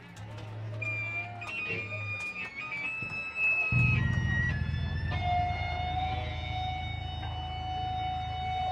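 Electric guitar feedback from a band's amplifiers between songs: high, steady whistling tones that jump between pitches, then a lower tone held from about five seconds in. Under it, a low amplifier buzz cuts in suddenly near the middle.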